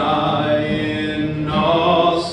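A man singing a worship song in long, held notes into a microphone, accompanied by acoustic and electric guitars.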